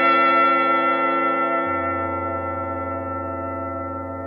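Orchestral closing music cue of a 1950s radio drama: a sustained chord held and slowly fading, with a low bass note coming in a little over a second and a half in.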